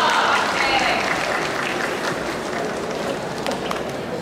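Spectators applauding as a gymnast finishes a parallel bars routine, slowly fading, with a few shouting voices at the start.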